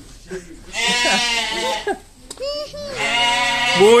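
Sheep bleating: two long bleats of about a second each, the first about a second in and the second near the end, with a short call between them.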